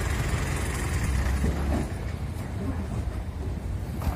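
A vehicle engine idling, a low steady rumble, with faint voices in the background.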